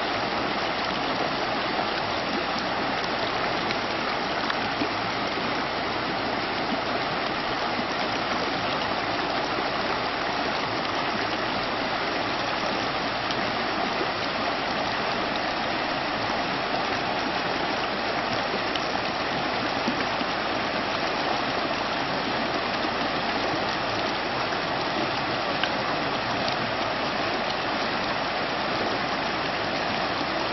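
Shallow rocky mountain stream rushing steadily over stones and small cascades.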